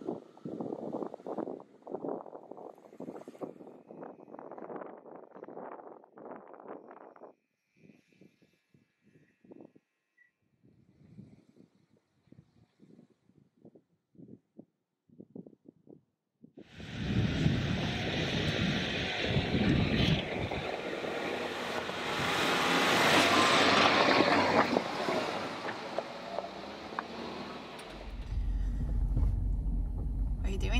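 Jeep Wrangler moving off slowly over snow, its tires crunching, dense at first and then thinning and fading over the first half. From just past the midpoint a loud rush of wind covers the microphone. Near the end a low, steady engine and road rumble comes from inside the cab.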